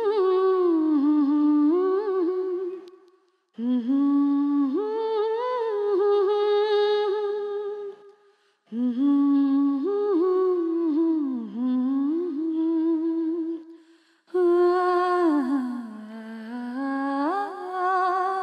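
A woman's voice humming an unaccompanied melody in four phrases, each about four to five seconds long, with short breaks between them. The held notes glide and waver in pitch.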